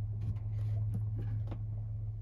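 A few faint taps on a cab touchscreen display, about half a second apart, over a steady low hum.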